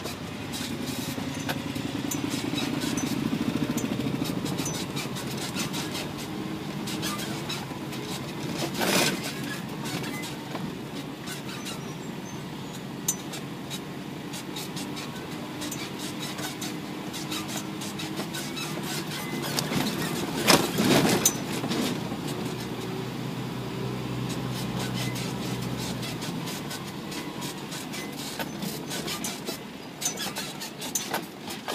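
Isuzu NPR 4WD truck's diesel engine running steadily as it drives down a rough track, with constant rattling and knocking from the truck. Two louder jolts come about nine and about twenty-one seconds in.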